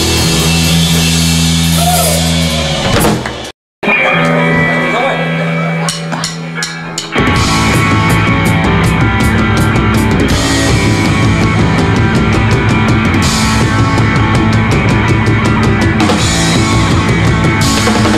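Live punk rock band, with distorted electric guitar, bass guitar and drum kit, playing loud. The sound cuts out for an instant about three and a half seconds in, a quieter stretch of ringing guitar follows, and the full band comes back in hard about seven seconds in as the next song starts.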